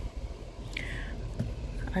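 A brief whispered, breathy murmur about a second in, over a steady low background hum, with a light click as plastic dish-soap bottles are handled.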